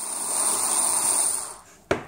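Small handheld electric screwdriver running steadily as it backs a screw out of an aluminium enclosure's end plate, its motor whine stopping about three-quarters of the way through. A sharp click follows just after.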